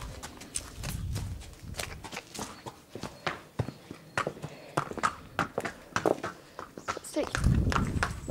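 Horse's hooves clip-clopping at a walk on brick paving, a string of irregular sharp knocks. A low rumble comes in near the end.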